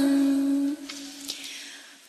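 A voice chanting Vietnamese verse holds the last syllable of a line as one steady note, which breaks off about three-quarters of a second in, leaving a faint pause.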